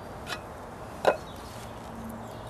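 Two sharp clicks from a pocket knife as garlic is cut over a small cooking pot: a faint one early and a loud one about a second in.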